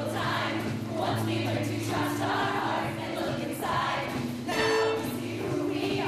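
Women's show choir singing in full harmony over a live backing band, with a loud held note about four and a half seconds in.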